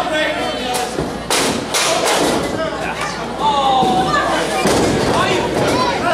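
Spectators shouting, with a quick run of heavy thuds on the wrestling ring, roughly one to two seconds in.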